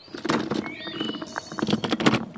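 Rapid rustling and clicking, a cartoon sound effect of a present box being opened and rummaged through.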